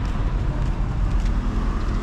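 Steady city traffic noise: an even low rumble of road vehicles, heard outdoors with no distinct single event.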